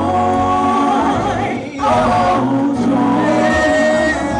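Male gospel vocal group singing in harmony, several voices holding long notes together, with a brief break a little under two seconds in.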